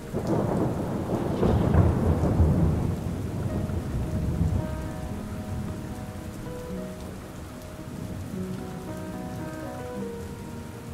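Steady rain with a roll of thunder, loudest in the first three seconds and then rumbling away. Soft, sustained background music notes sound under the rain from about the middle on.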